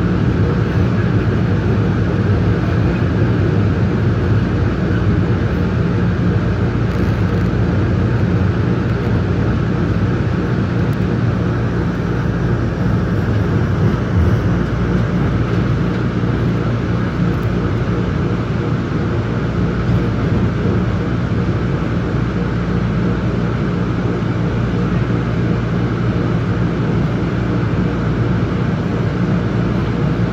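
MBTA Green Line light-rail train running through a subway tunnel, heard from inside the car: a steady rumble of wheels on rail with a low motor hum.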